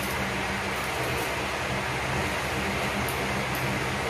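Steady background noise: an even hiss with a low, steady hum.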